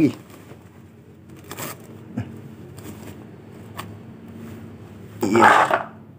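Cloth rustling and a few light knocks as spiny durian fruits are pulled out of their cloth wrappers, then a short burst of a man's voice near the end.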